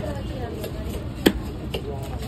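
A large fish-cutting knife chopping through fish onto a wooden log chopping block: one sharp chop a little past halfway, then a lighter knock. Voices murmur in the background.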